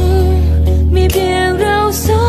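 A Thai pop song: a woman sings long, sliding held notes over a band with a steady bass.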